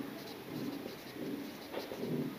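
A marker writing on a whiteboard in short strokes, with soft low humming sounds, each about half a second long, underneath.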